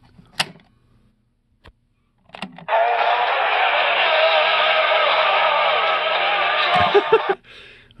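Aiwa CS-P500 mini boombox playing a cassette through its small built-in speaker: thin, tinny playback with wavering pitch, running slow because the tape drive needs work. A few clicks from the cassette buttons come before it starts, about two and a half seconds in, and it is stopped with clicks near the end.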